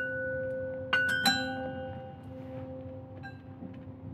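Bell-like metal percussion struck with a drumstick: two quick strikes about a second in ring out with bright bell partials that fade over a couple of seconds, then a faint tap near the end, all over a steady low drone.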